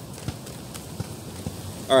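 A tarot deck being shuffled and a card drawn by hand: a few light, irregular card flicks and taps over a steady background hiss. A man's voice starts at the very end.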